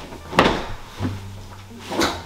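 A heavy thump as a person lands on a mattress, with smaller knocks about a second in and near the end as he settles.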